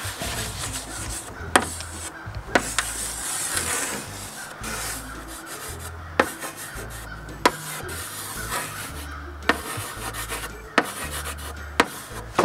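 Chalk drawing on a chalkboard: continuous scratchy rubbing strokes, with a few sharp taps where the chalk strikes the board.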